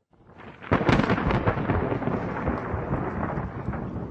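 A sudden loud crash about three-quarters of a second in, followed by a long crackling rumble that slowly fades.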